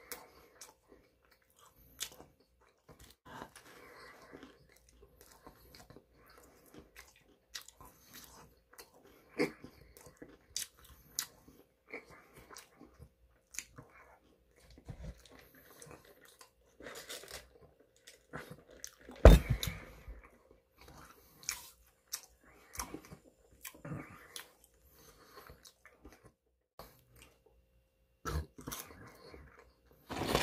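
Close-up mouth sounds of someone chewing and biting fast food: irregular wet smacks and crunches. A single loud thump stands out about two-thirds of the way through.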